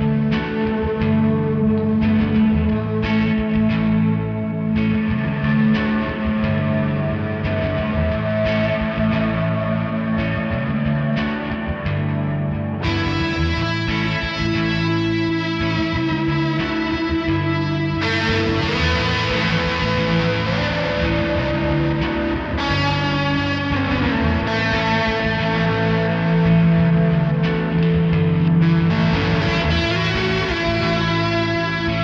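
Electric guitar played through a pedalboard of effects pedals, with distortion, sustaining chords in a washed-out shoegaze tone. The sound turns brighter and fuller about 13 seconds in, and again about 18 seconds in.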